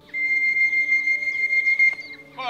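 A steady, high-pitched electronic beep held for nearly two seconds, the kind an electronic pigeon-clocking system gives when it registers a bird arriving at the loft. Faint background music underneath.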